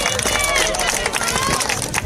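Voices over busy outdoor street noise, with many short clicks or knocks mixed in.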